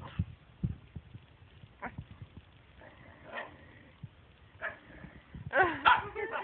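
Dog vocalizing in short, whining 'talking' grumbles: a few brief calls, with the loudest and longest, rising and falling in pitch, near the end. These are the strange talking noises of a dog jealous of the cat being petted. A couple of soft bumps come in the first second.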